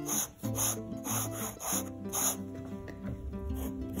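Fountain pen with a bent 55-degree Fude nib scratching across sketchbook paper in a run of short, quick hatching strokes, over background music with held notes.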